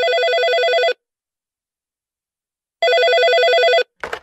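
Telephone ringing twice, signalling an incoming call. Each ring is a warbling tone about a second long, and the rings are nearly two seconds apart.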